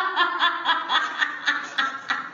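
A snickering laugh: a run of short, pitched laugh pulses, about four a second.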